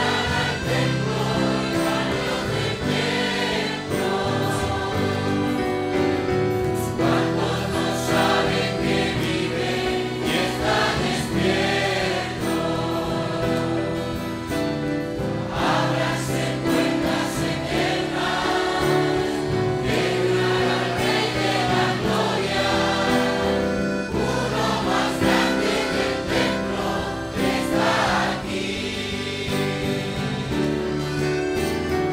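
A large congregation singing a Spanish-language worship hymn together, over instrumental accompaniment with a steady beat.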